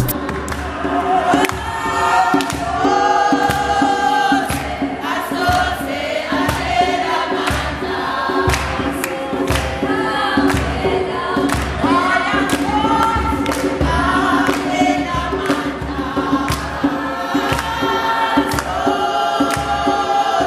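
A group of voices singing a gospel song in harmony, with a steady beat of hand claps about twice a second.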